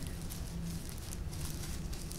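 Gloved hands patting down potting soil around a freshly planted succulent cutting in a clay pot: a few faint, soft pats and rustles.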